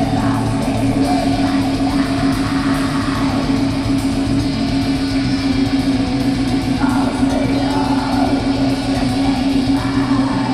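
Black metal band playing live: loud distorted electric guitars, bass and rapid drumming, with vocals over the top, heard through a raw audience recording.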